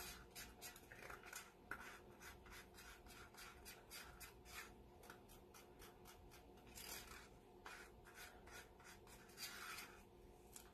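Faint, irregular small scrapes and light clicks, several a second, from gloved hands working paint and a stick over plastic cups while layering acrylic paint.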